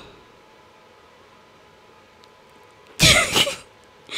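Quiet room tone, then about three seconds in a single short, sudden vocal burst from a woman close to the microphone, lasting about half a second.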